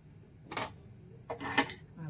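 Light metallic clinks of a pressure cooker pot and its aluminium lid being handled: one clink about half a second in, then a quick cluster of clinks with brief ringing.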